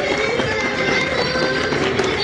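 Live concert hall sound: music with several voices over it, steady and fairly loud.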